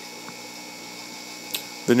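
Steady low background hum with a faint click about a second and a half in; a man's voice starts again at the very end.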